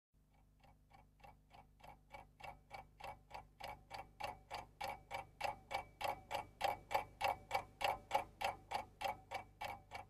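Steady, even ticking, about three and a half ticks a second, fading in and growing louder throughout.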